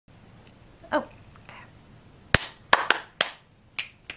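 Fingers snapping: five sharp snaps starting about halfway in, unevenly spaced.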